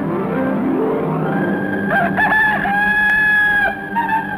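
A rooster crowing as the Pathé News cockerel trademark: about two seconds in, a few short broken notes, then one long held note lasting under a second.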